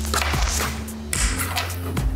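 Background music with a low, steady drone, and a brief airy hiss about half a second in.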